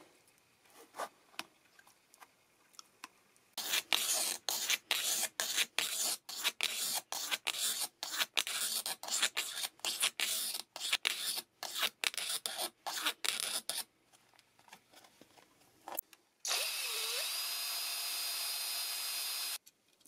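Quick rasping strokes of a file working the plastic pickguard's humbucker opening, enlarging a route the pickup did not fit, going on for about ten seconds. Near the end a small power tool spins up and runs steadily for about three seconds.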